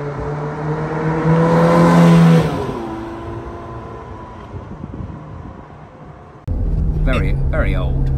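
Ferrari F430 Scuderia's V8 engine accelerating past on the street: the note climbs in pitch to its loudest about two seconds in, then drops and fades away. Near the end it cuts abruptly to the steady engine drone heard inside the cabin, with a voice over it.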